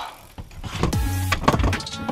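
Background music with a steady beat, over clicks and a scrape as a camper van's plastic window blind and fly-screen frame is pulled off around the side window.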